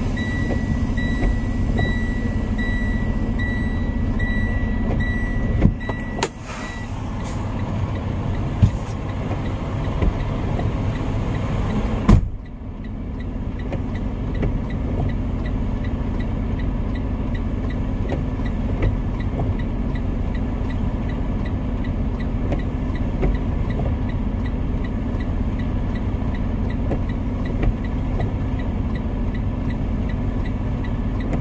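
Semi-truck diesel engine idling steadily, heard from inside the cab. A high beep repeats for the first six seconds or so, and a sharp thump about twelve seconds in leaves the sound duller afterwards.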